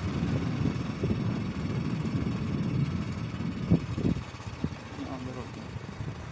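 Outdoor road ambience: a heavy, uneven low rumble of traffic, with a few short knocks near the middle. It eases slightly in the second half.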